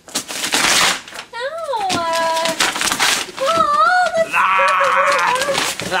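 A short rustling burst, then high wail-like vocal sounds whose pitch swoops down, holds, and wavers.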